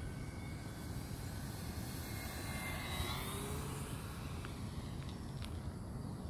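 Electric RC model warbird (Flightline LA-7) flying past overhead. The motor and propeller whine rises in pitch and then falls as it passes, loudest about halfway through, over steady wind rumble.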